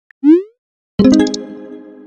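Chat-app sound effects: a short rising 'bloop' shortly after the start, then about a second in a bright chime that rings with several tones and fades out.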